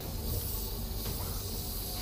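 A steady hiss that comes in suddenly, over a low hum.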